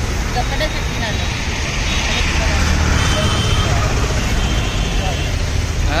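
Steady road-traffic noise with a low rumble, growing a little louder around the middle, with faint voices over it.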